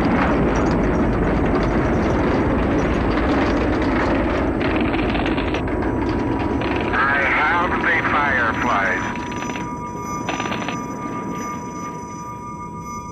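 A muffled voice over a radio link, buried in heavy rumble and hiss, with a steady beep-like tone joining about halfway through; the whole thing grows quieter over the last few seconds.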